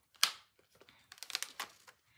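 Paper rustling and crinkling as a paper-clipped stack of collaged pages is picked up and handled, with one sharp tap about a quarter second in.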